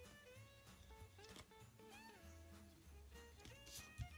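Quiet background music: a plucked-string melody moving note by note over a low sustained bass.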